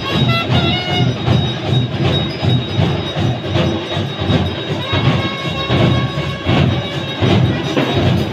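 Festival music: a steady drum beat under a high melody of short, sliding notes.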